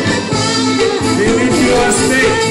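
Live band music with a singer's voice over drums and keyboard, loud and steady.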